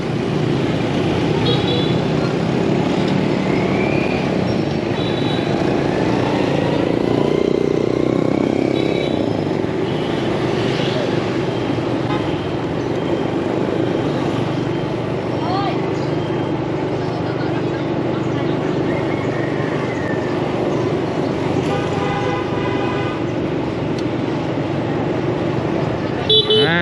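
City street traffic, mostly motorbikes: steady engine and road noise, with short horn toots a few times and a longer horn-like sound a few seconds before the end.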